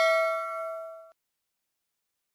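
Ringing tail of a notification-bell chime sound effect, a clear ding that dies away and stops about a second in.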